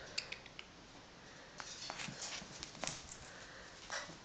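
Scattered faint taps and clicks of a caique parrot nudging a ping pong ball with its beak as it moves about on a fleece blanket.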